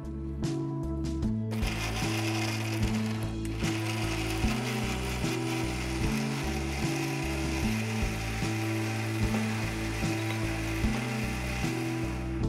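Electric mixer grinder running steadily, grinding a wet masala into a fine paste, starting about a second and a half in. Background music with slow bass notes plays underneath.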